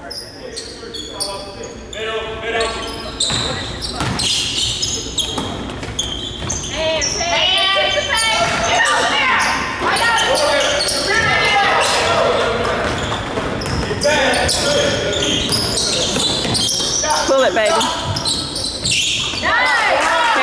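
A basketball bouncing on a hardwood gym floor during a game, echoing in the large gym, with voices calling out over it.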